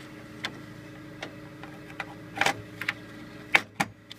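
Short plastic clicks and knocks, about seven at uneven intervals, as a RAM stick and the latches of a desktop motherboard's memory slot are handled. The module's notch doesn't line up with the slot. A sharp pair of clicks near the end is the loudest, over a steady low hum.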